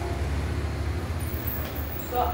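A steady low rumble of background noise, with no speech or music.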